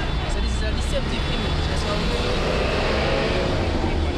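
Street noise: a steady low rumble of traffic, with a slight swell partway through, and indistinct voices of people talking nearby.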